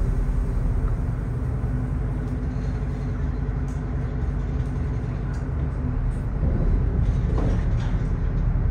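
Steady low rumble of a passenger boat's engine, heard from on board through an open side door.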